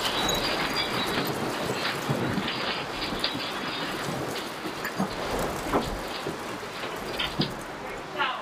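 Shop shelving and stock rattling under earthquake shaking, a continuous noisy clatter with sharper knocks of goods falling to the floor, several of them in the second half.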